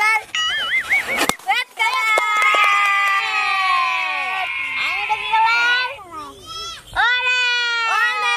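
A rubber party balloon pops sharply about a second in. Children's voices then shriek and shout in excitement for several seconds.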